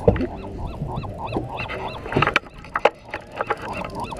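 Many short animal calls repeating rapidly, several a second, with sharp clicks and knocks among them.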